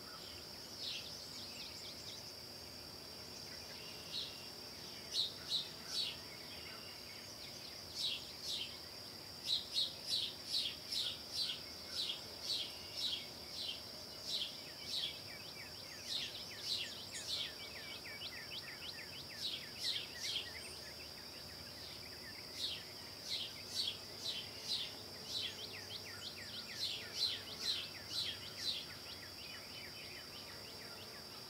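Woodland ambience: a steady high-pitched insect drone, with runs of short repeated chirps, about two a second, through most of the second half.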